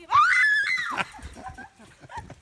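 A woman's loud, high-pitched scream, rising in pitch and lasting about a second, then breaking off, while she is being chased by a rooster.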